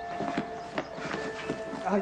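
Footsteps of two people walking up over outdoor ground, a series of irregular knocks, while a held music cue fades beneath them.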